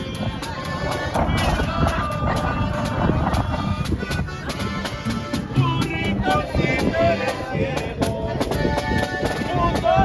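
Live acoustic guitars and a large bass guitar playing a steady strummed rhythm, with people talking around them.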